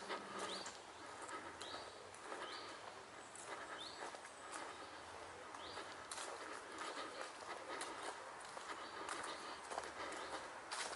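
Footsteps walking at a steady pace on a grass path strewn with leaves. Short rising high chirps repeat about once a second through the first half.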